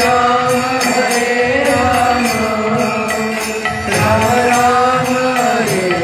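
Devotional kirtan: voices chanting a mantra in long held notes that slide in pitch, over a steady percussion beat.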